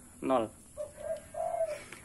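A bird cooing: two soft, low notes in the second half, the second a little longer than the first.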